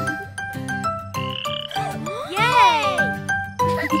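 Cartoon frog croaking sound effects over a bouncy instrumental tune of short plucked-sounding notes, with one long swooping call that rises and falls about two and a half seconds in.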